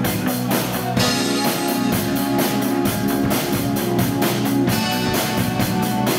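A live rock band playing an instrumental passage: electric guitar and bass guitar over a steady drum beat, with a louder crash about a second in.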